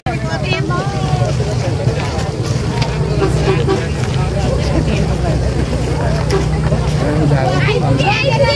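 A vehicle engine running with a steady low rumble, with scattered voices of people around it.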